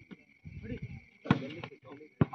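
A hand striking a volleyball during a rally: one sharp smack a little past a second in, followed by a couple of fainter knocks, with a short shout from a player or spectator before it.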